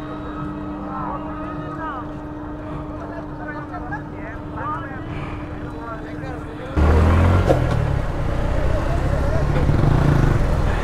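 Bridge-side ambience: a steady hum with faint distant voices. About seven seconds in it cuts suddenly to the much louder rumble of riding a motorbike, with wind on the helmet-mounted camera's microphone.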